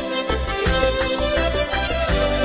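Live band playing a Sudanese song in an instrumental passage between sung lines. A held melody runs over a bass line and regular percussion strikes.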